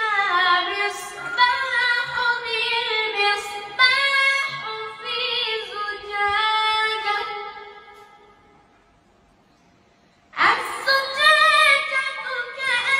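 A boy's voice chanting a melodic Quran recitation (tilawa) with long held, ornamented notes. The phrase fades out about two-thirds through, and after a pause of about two seconds the next phrase begins.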